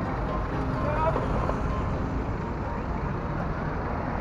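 Steady road traffic noise from a busy city road, with a car passing close by.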